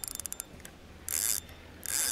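Fishing reel being cranked to retrieve a method feeder, a quick run of ratchet-like clicks in the first half second. This is followed by two short hissing sounds a little under a second apart.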